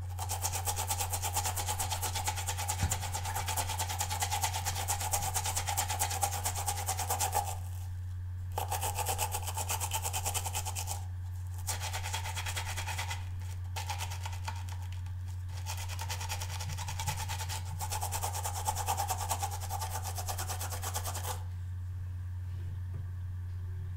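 A watercolour brush's bristles scrubbed quickly back and forth over the ridged surface of a silicone brush-cleaning pad, a fine scratchy rubbing in several bouts with short pauses between. A steady low hum runs underneath.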